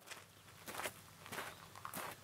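Footsteps of two people walking on gravel: a series of faint crunching steps, some landing in close pairs.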